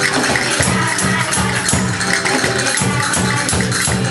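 Live children's music performance: cajones beat a steady rhythm while small hand percussion rattles along.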